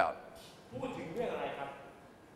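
Speech only: a man finishes a spoken question, then a quieter voice speaks for about a second.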